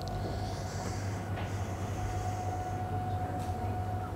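Steady low electrical hum with a thin, faint whine above it, from machinery running.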